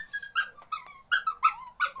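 A dog whimpering in about six short, high-pitched whines, each falling in pitch.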